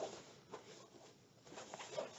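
Faint rustling and handling noises from a fabric backpack disc golf bag, an MVP Voyager Slim, as a hand rummages inside it, with a few soft clicks in the second half.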